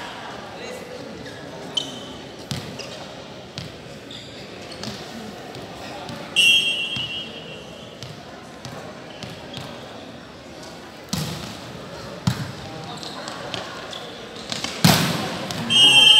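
A referee's whistle sounds once, short and shrill, about six seconds in, signalling the serve. Three sharp hits on a volleyball follow in the second half as a rally is played, the last the loudest, and a second whistle starts right at the end.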